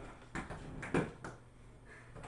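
Quiet indoor room tone with two faint, brief knocks, about a third of a second in and about a second in.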